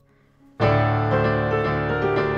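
Digital piano starting to play about half a second in: a full chord struck and held, with notes moving above it.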